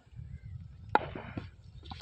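A cricket bat striking the ball once, a single sharp crack about a second in, as the ball is lofted high. Wind rumbles on the microphone throughout.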